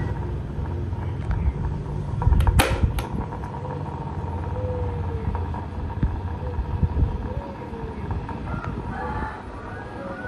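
Electric desk fans running with a steady low whirr, one of them spinning a plastic propeller at speed. A single sharp clack stands out about two and a half seconds in.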